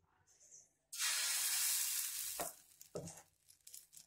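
Red rice dosa batter poured onto a hot iron dosa tawa, sizzling loudly all at once about a second in and then dying down, with shorter sizzles as the ladle spreads it.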